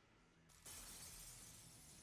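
Faint shattering, like something breaking into pieces, that starts suddenly about two-thirds of a second in and fades away.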